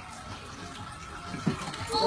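Gas stove burner flame hissing steadily at a fairly low level.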